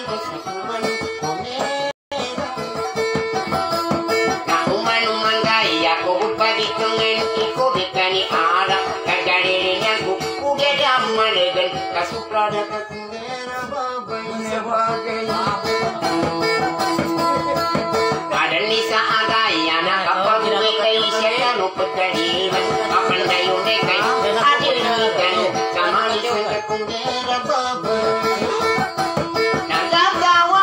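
Acoustic guitar strummed in a quick, steady rhythm, accompanying a voice singing long, wavering melodic lines. The voice drops out for a few seconds near the middle while the guitar carries on.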